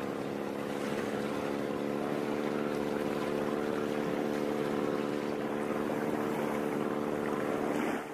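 A small fishing boat's motor running at a steady speed as the boat moves along, with the rush of water and wind. The engine holds one constant pitch throughout.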